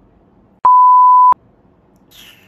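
A single steady electronic bleep, one pure tone about two-thirds of a second long that starts and stops abruptly, the kind laid over speech as a censor bleep, set against faint room tone.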